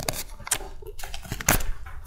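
A small piece of paper being handled and folded, crackling unevenly, with sharp clicks about half a second and a second and a half in.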